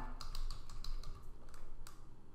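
Typing on a computer keyboard: a quick, uneven run of key clicks that stops just before the end.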